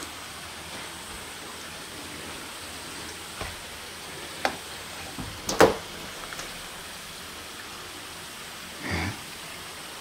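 Steady hiss of the recording's background noise, broken by a few light clicks and knocks. The sharpest comes about halfway through, and a soft thud follows near the end.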